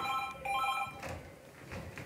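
Office desk telephone ringing electronically: two short rings in quick succession, stopping about a second in.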